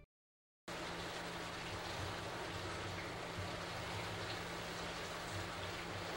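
A dishwasher running mid-cycle: a steady rushing, rain-like water noise with a low hum under it, starting abruptly after a brief silence less than a second in.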